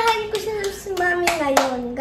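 A girl clapping her hands quickly, about three to four claps a second, while a voice holds one long drawn-out cheering note that slides slowly down in pitch.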